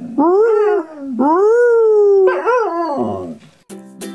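A dog howling: about three long howls, each rising and then sliding down in pitch, the last one dropping low as it trails off. Plucked-string music starts near the end.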